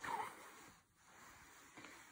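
Faint room tone, with one brief soft swish at the very start.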